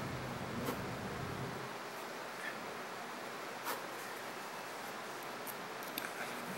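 Faint handling of small metal parts: a hex key scraping and giving a few light clicks as it is worked into a small lock screw on a rotary table's shaft assembly, over steady room hiss.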